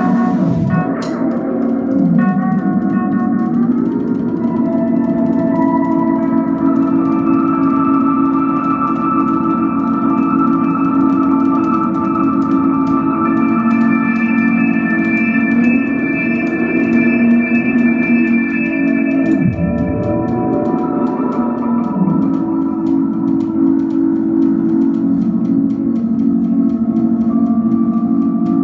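Live free-improvised music: electric guitar through effects and keyboard electronics hold sustained, layered drone tones, with sliding pitch dips a couple of seconds in and again about two-thirds through.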